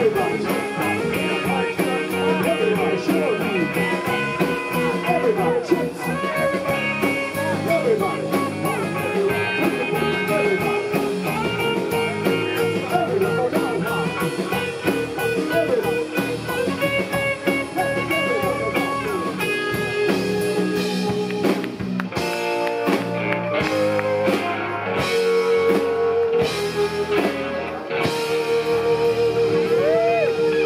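Live rock band playing an instrumental stretch without vocals: electric guitars, violin, bass and drum kit, the cymbals keeping a steady beat. Near the end the beat thins out under long held notes.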